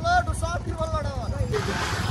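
A man's voice talking over a steady low rumble. About one and a half seconds in, the talk breaks off and a rushing hiss takes over.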